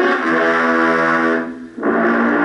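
Two long, steady horn-like chords on the 1960s TV drama's soundtrack. The first breaks off about a second and a half in, and the second starts just before the end.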